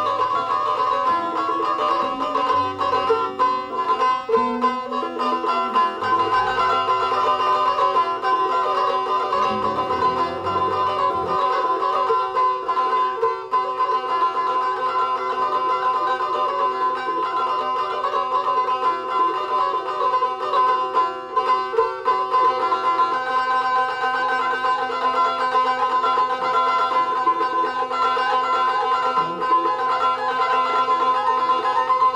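Çiftelia, the Albanian two-string long-necked lute, playing a plucked folk melody over a steady held drone tone. Lower notes move underneath during roughly the first third.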